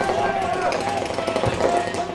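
Paintball markers firing in fast, continuous streams, a rapid rattle of shots, with voices underneath.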